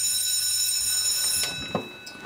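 School bell ringing with one steady, shrill electric tone that stops about one and a half seconds in and dies away, marking the end of the detention session. A single knock follows near the end.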